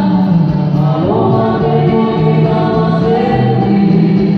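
A live band plays through stage speakers while the singers sing sustained, melodic lines over guitar accompaniment.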